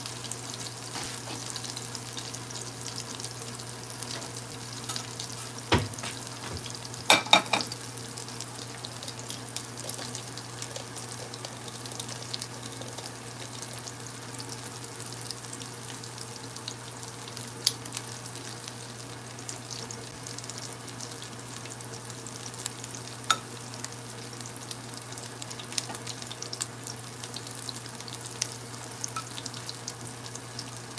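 Battered calamari rings deep-frying in hot oil in a pan, a steady sizzle and crackle over a low hum. A few sharp clinks and knocks cut through, the loudest cluster about six to seven seconds in.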